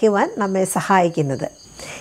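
A woman talking, pausing about a second and a half in, over a steady high chirring of night insects.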